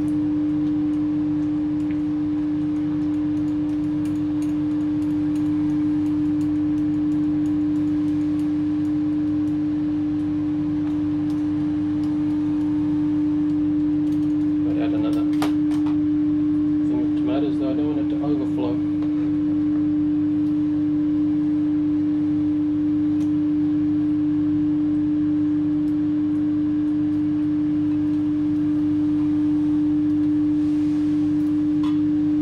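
A loud, steady single-pitch hum with a fainter higher tone above it and a low rumble beneath, unchanging throughout. About halfway through, a few brief clicks and rattles sound over it.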